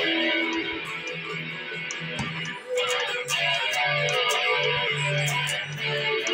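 Solid-body Stratocaster-style electric guitar played with a pick, strumming chords and picking notes in a rock style, with fresh strums at the start and about three seconds in.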